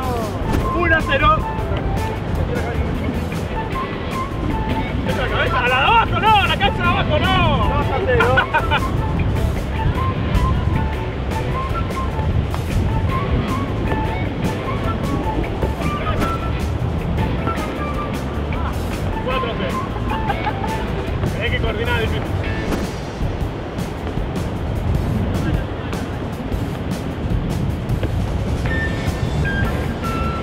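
Background music with a steady beat, with voices over it at times.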